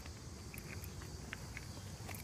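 Quiet outdoor background: a steady high drone of insects, with a few soft clicks.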